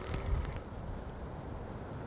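Fixed-spool fishing reel being wound on a long float rod while a fish is brought in: a faint, steady mechanical whirr.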